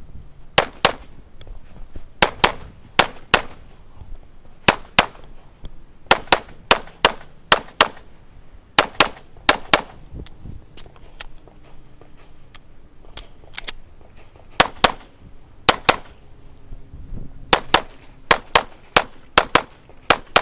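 Springfield XD(M) pistol fired rapidly, mostly in quick pairs of shots about a quarter second apart: two shots on each paper target, with brief pauses between pairs and a lull of a couple of seconds midway as the shooter moves.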